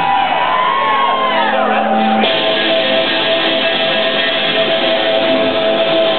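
Punk band playing live through a club PA. For about two seconds there are sliding, wavering tones, then the full band with electric guitars comes in suddenly and plays on.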